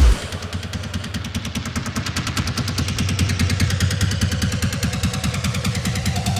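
Techno played over the festival sound system: a heavy low hit right at the start, then a rapid even roll of repeated percussive hits, about eight a second, over a steady low bass.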